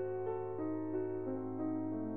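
Background music: a soft piano melody of sustained notes stepping slowly downward.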